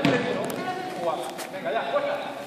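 A basketball bouncing on the court floor, with two sharp knocks about a second apart, over faint voices in the hall.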